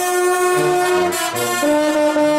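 Brass band of bersaglieri flugelhorns (flicorni) and trumpets playing. A full chord is held for about a second, then the band moves on to new notes, with a bass line pulsing underneath.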